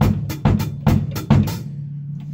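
Drum kit played with sticks: evenly spaced hits of drum and cymbal together, a little over two a second, a quarter-note-triplet figure played off the beat in 6/8. The playing stops about a second and a half in, and a low drum rings on.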